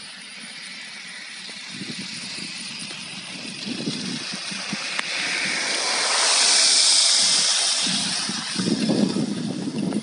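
A car driving on a wet, slush-covered road, its tyre hiss swelling to its loudest about six to seven seconds in as the car comes up close and slows, then easing off. An uneven low rumble grows near the end.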